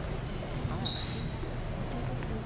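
Footsteps on a gymnasium floor as a child actor crosses it, heard over faint voices and a steady low hum in a large hall.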